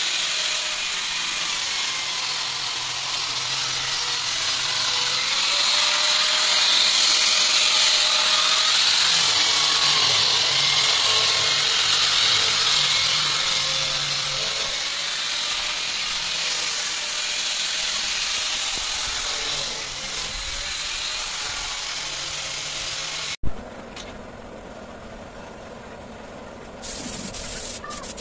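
Handheld electric sander running continuously against the wooden slats and frame of a partition. It stops abruptly about 23 seconds in, and a quieter steady hiss follows, growing louder near the end.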